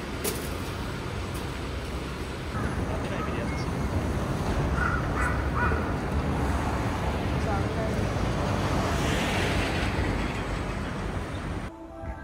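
Busy city street ambience: steady traffic and crowd noise, with one sharp clack just after the start as a drink can is dropped into a street recycling bin.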